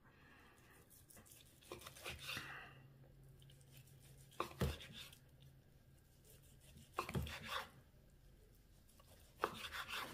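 Chef's knife slicing through roasted turkey breast on a bamboo cutting board: four short groups of cuts, the blade knocking on the wood, a couple of seconds apart.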